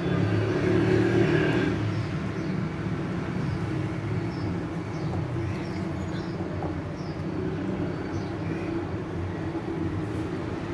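A hand wire whisk beating thick pancake batter in a bowl, over a steady low background rumble that is a little louder for the first two seconds.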